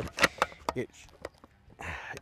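A series of short, sharp metal clicks and clacks from an Inter Ordnance XP AK-pattern semi-automatic shotgun being handled to clear a feed jam, in which a shell failed to ride up the feed ramp and its case was deformed.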